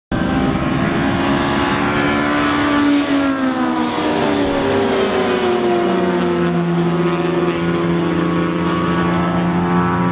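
Car engines running on a race circuit during a track day; one engine note falls in pitch over the first few seconds, then holds steady.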